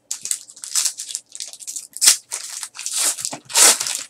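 A foil trading-card pack wrapper being torn open and crinkled by hand: a run of short crackling rips, loudest about two seconds in and again near the end.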